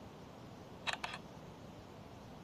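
Two quick sharp clicks close together about a second in, with a fainter third just after, over a steady faint hiss.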